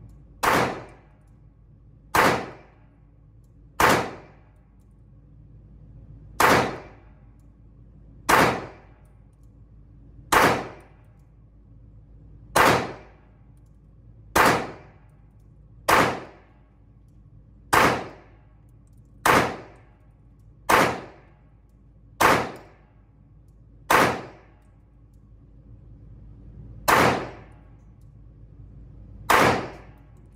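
Sixteen single shots from a 9mm Glock 19X pistol, fired at a slow steady pace of roughly one every one and a half to two seconds, with a longer pause near the end. Each shot rings briefly off the walls of an indoor shooting range.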